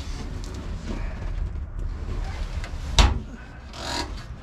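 Low rumble of a phone microphone being handled, with one sharp knock about three seconds in: the diamond-plate aluminum door of a boat's seat storage box being shut.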